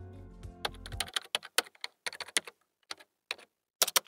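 Computer keyboard typing sound effect: a quick, irregular run of keystroke clicks. The intro music's last held notes fade out in the first second.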